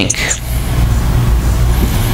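A steady low rumble fills the pause, with the tail of a man's speech in the first half second.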